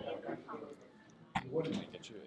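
Indistinct chatter of several people talking, with one sharp knock about one and a half seconds in.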